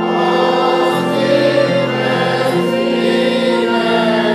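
Congregation singing a slow Reformed hymn together, accompanied by an electronic keyboard on an organ sound, with long held notes.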